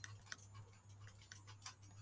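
Near silence: faint, rapid ticking, about three ticks a second, over a low steady hum.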